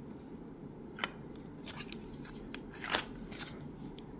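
Quiet clicks from handling nail-stamping tools, then a short scrape about three seconds in: a plastic scraper card drawn across a metal stamping plate to clear off the excess stamping polish.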